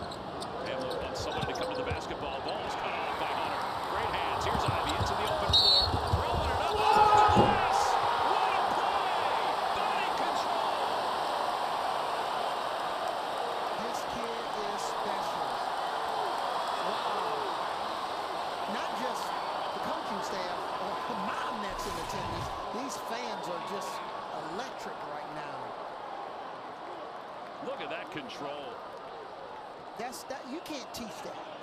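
Basketball game sounds: the ball bouncing on the hardwood court amid a steady haze of crowd voices in the arena, the crowd growing louder about five to eight seconds in.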